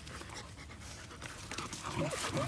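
A dog panting, fairly quietly.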